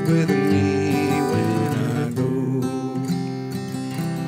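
Acoustic guitar strumming and ringing chords, a little softer in the second half.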